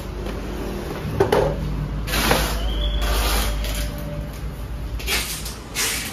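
Cardboard packs of fireworks being dropped and slid into a cardboard carton: a series of knocks and scrapes of cardboard on cardboard, with a longer scrape a little after two seconds in.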